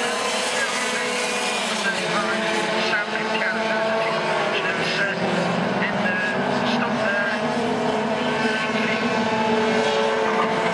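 Several racing kart engines buzzing at once, their pitches rising and falling as the karts accelerate and brake around the circuit.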